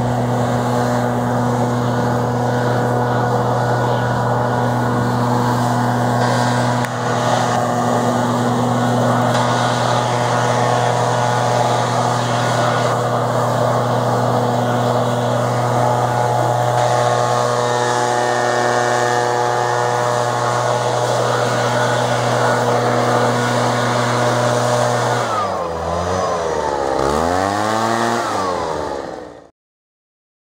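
Small two-stroke engine of a backpack blower running steadily at high speed. Its pitch dips and rises a couple of times near the end, then it cuts off suddenly.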